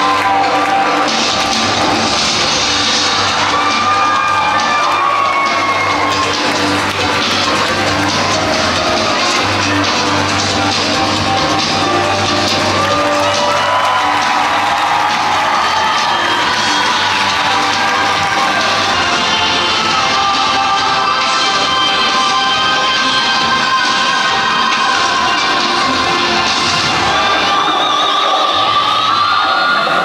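Loud, continuous show music over a theatre sound system, with an audience cheering and whooping over it.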